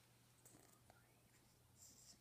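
Near silence: room tone with a steady faint hum and a few faint ticks.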